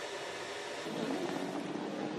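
Race-car circuit sound: a steady rushing hiss, joined about a second in by a low, steady engine hum.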